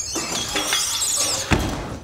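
Firefighter sliding down a brass fire pole: a high squealing friction noise of hands and uniform rubbing on the brass, ending in a thud as his boots hit the floor about a second and a half in.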